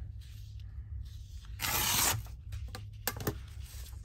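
An old book page being torn along a clear deckle-edge tearing ruler: one quick rip lasting about half a second, midway through. A couple of light clicks follow shortly after.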